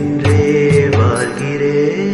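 Music from a slow Tamil love song: a long held note over low drum beats, which stop about halfway through and leave the held note ringing on.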